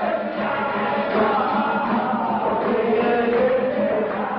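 Lebanese zajal singing: voices chanting a sung verse over a steady low tone, the sound dull and cut off in the highs.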